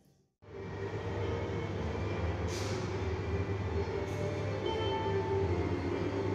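Steady, loud mechanical rumble with a faint steady hum over it, cutting in abruptly about half a second in.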